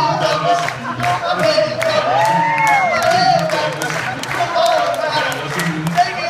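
An all-male vocal group singing live: a lead voice with long held and sliding notes over the group's low sustained backing, with a steady percussive beat about three times a second.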